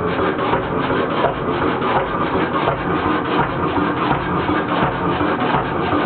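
Kelvin K1 single-cylinder marine engine running steadily on diesel, with an even, rapid mechanical clatter.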